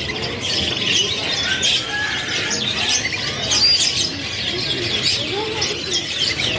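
A cage full of young AFS-series canaries chirping and twittering together: a dense, continuous chorus of many short high tweets and trills overlapping one another.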